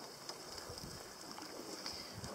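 Faint, steady water noise around a fibreglass mokoro being poled through a reedy channel.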